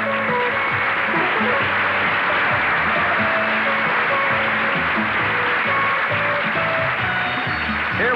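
Music playing steadily, with a repeating bass line and held notes.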